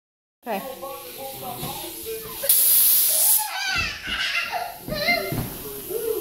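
A handheld air blow gun on a red air hose gives one loud hiss lasting about a second, a few seconds in, amid voices.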